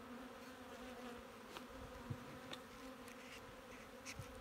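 Honeybees buzzing around an opened hive: a faint, steady hum, with a few soft ticks.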